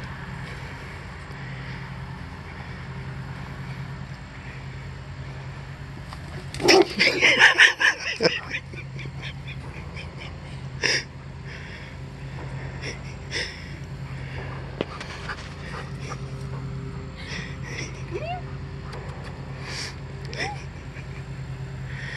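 A person's voice: one loud burst of vocal sound about seven seconds in, then several short, quieter vocal sounds, over a steady low hum.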